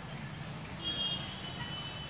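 Outdoor background hum of distant traffic, with a thin high steady beep starting about a second in and lasting about a second.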